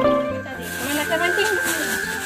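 Plucked-string background music stops at the very start. Then comes a hiss with a steady, thin high-pitched tone and faint voices.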